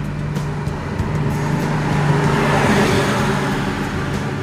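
A car passing by on the road, its noise swelling to a peak about two and a half seconds in and then fading, over a steady low hum.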